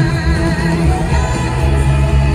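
Live rock-pop band playing loudly with a woman singing lead over guitars, bass and drums, recorded from the crowd in an arena.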